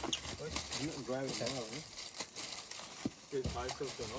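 People's voices laughing and exclaiming without clear words, over crackling and rustling of dry leaf litter.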